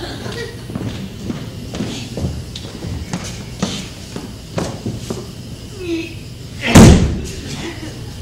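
Light knocks and footsteps on a wooden stage floor, then one loud slam about seven seconds in as a stage trapdoor lid falls shut.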